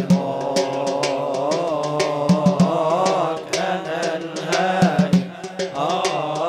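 Amplified male voice chanting long, wavering melismatic lines, in the style of religious inshad, over a steady low drone and regular percussion hits.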